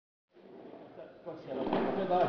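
A man's voice beginning to speak over faint room sound; the audio is silent for a fraction of a second at the start.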